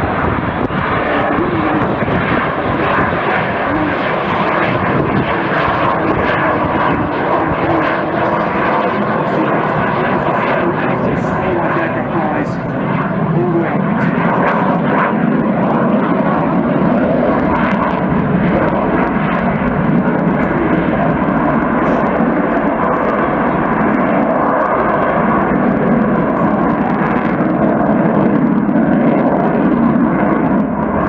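Eurofighter Typhoon's twin EJ200 turbofan engines running loud in a flying display, a steady jet rush that swells slightly near the end.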